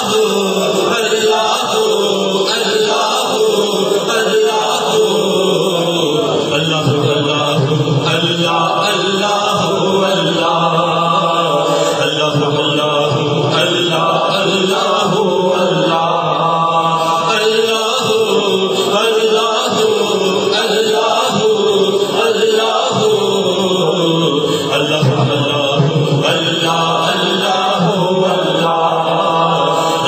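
A man singing a naat, a devotional Urdu poem, into a microphone in a long, continuous melodic line.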